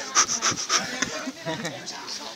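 Indistinct talk from a small group of people, quieter than close speech and not clearly worded.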